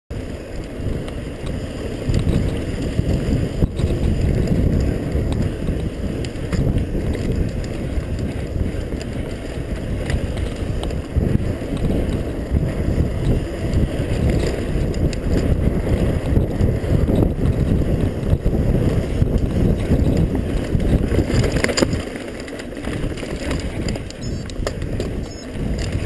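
Wind buffeting the microphone and the rumble and rattle of a mountain bike rolling fast over a dirt singletrack trail. It eases and gets quieter for the last couple of seconds.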